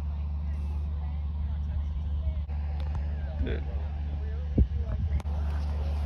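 A steady low rumble, with two brief knocks near the end.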